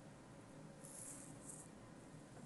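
Near silence: faint room tone, with two brief, faint high hisses about a second in.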